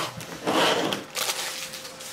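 Foil trading-card pack wrapper crinkling as it is crumpled and handled, in three short noisy bursts. A faint steady tone starts about a second in.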